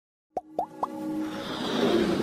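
Animated logo intro sound effects: three quick pops, each rising in pitch, about a quarter second apart, followed by a swelling musical build.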